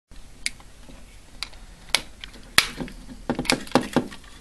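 Krone insertion tool punching wires into the IDC terminals of an NTE5 telephone socket: a series of sharp plastic clicks and snaps, the loudest about two and a half seconds in, with a quick run of clicks near the end.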